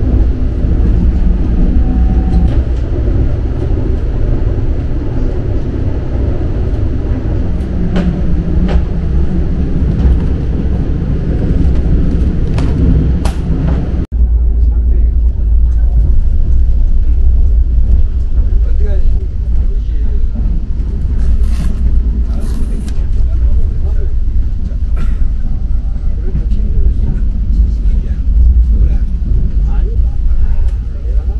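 Steady low rumble of an ITX-MAUM electric train running, heard from inside the passenger cabin, with a few short clicks, and a momentary break in the sound about halfway through.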